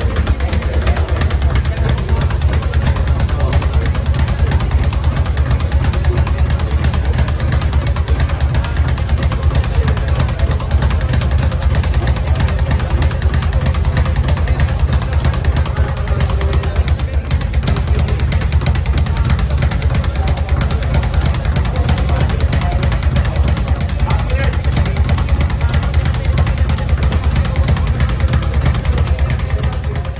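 Speed bag being punched at high speed, rebounding off its wooden platform in a steady, very fast drumming rattle that keeps up without a pause.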